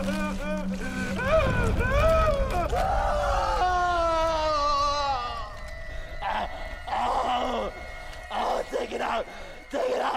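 A man screaming and wailing in pain, long drawn-out cries that rise and fall in pitch, breaking up about five seconds in into short ragged sobs and gasps.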